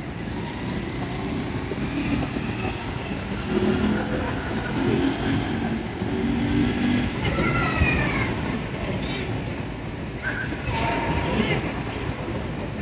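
Indistinct distant voices over a steady low outdoor rumble.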